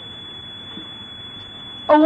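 A steady high-pitched whine over faint background hiss in an old sermon recording, with a man's voice coming back in near the end.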